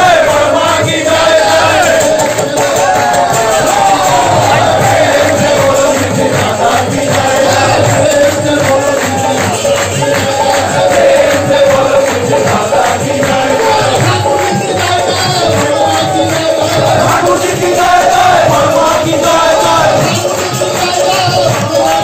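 A congregation singing a devotional bhajan together, a sung melody over a steady rhythm of percussion, heard loud from within the crowd.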